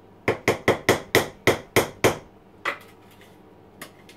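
Spoon knocking against the rim of a plastic mixing bowl to shake cake batter loose into the tin: a quick run of about eight taps, then one more, and a faint one near the end.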